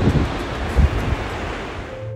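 Surf breaking and washing up a beach, with wind rumbling on the microphone.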